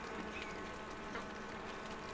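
Honeybees humming steadily at the entrance of a wooden beehive in winter.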